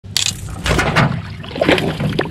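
A spinning rod snapping with a sharp crack under the strain of a hooked walleye, with water splashing and sloshing as the fish fights beside the canoe.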